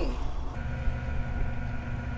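Steady low machine hum with a faint steady whine above it, setting in about half a second in. A single light click sounds near the one-second mark.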